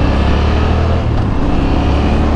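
A Yamaha Ténéré 700's parallel-twin engine running steadily as the bike rides along a road, with wind rushing over the microphone.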